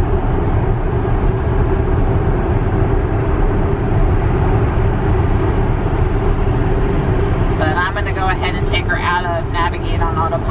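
Steady road noise from the tyres and air inside the cabin of a Tesla Model X electric SUV cruising at highway speed, with no engine sound under it. A voice comes in over it a little over two seconds before the end.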